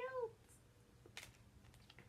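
A short, high-pitched call that rises and then falls in pitch, ending just after the start, followed by a soft click about a second later.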